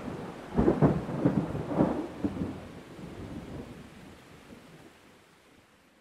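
A low rolling rumble with several crackling swells in the first couple of seconds, then fading away to nothing over the next few seconds.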